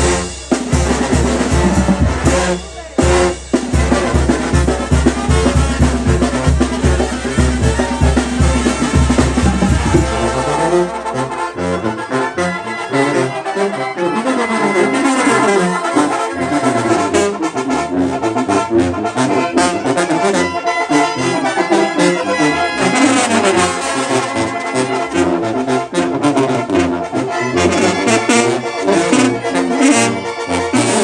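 Mexican brass band music, loud. For about the first ten seconds a heavy, regular bass-drum beat dominates. Then the deep beat drops away and the band's brass (sousaphones, trumpets and trombones) carries the tune.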